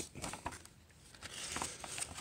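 Paper rustling and soft crinkles as the pages of an old magazine are turned by hand, a little busier in the second half.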